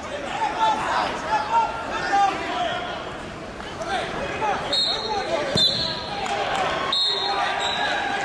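Wrestling shoes squeaking in many short chirps on the mat as the wrestlers scramble, over the voices of a crowd echoing in a large gym.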